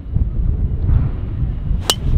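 TaylorMade M5 titanium driver striking a golf ball off the tee: one sharp, metallic crack near the end, over a steady low rumble on the microphone.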